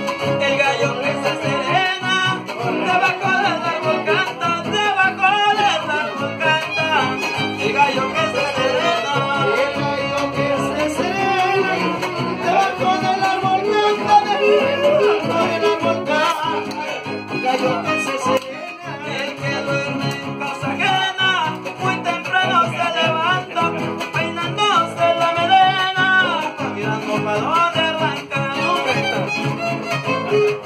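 Son huasteco (huapango) played live by a trío huasteco: a violin carries the melody over rhythmically strummed jarana huasteca and huapanguera.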